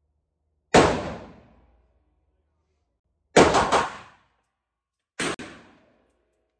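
Pistol shots in an indoor range, each a sharp, loud crack trailing off in about a second of echo: one about a second in, a quick cluster of reports near the middle, and another near the end.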